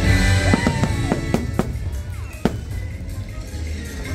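Fireworks shells bursting over show music: a cluster of sharp bangs in the first half, with the last and loudest about two and a half seconds in, while the music carries on underneath.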